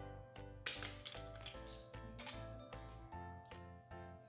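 Background music with a steady beat and repeating bass notes. From about half a second in to about two seconds, small plastic LEGO pieces rattle and clink over it.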